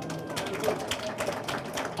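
Audience clapping after a greeting: a dense, irregular patter of many claps.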